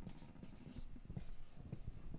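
Marker pen writing on a white board, a run of short, irregular scratching strokes as words are written.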